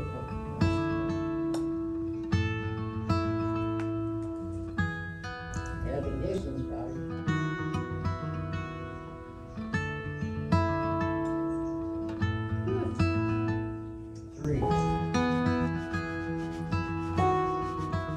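Background music led by a strummed and plucked acoustic guitar, with a person's voice heard briefly a couple of times.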